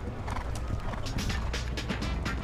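Horse hoofbeats on turf with music, likely the closing theme, coming in under them.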